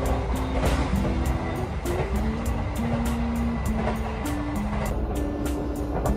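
Steady low rumble of a moving passenger train heard from inside the carriage, with background music playing a simple melody over it.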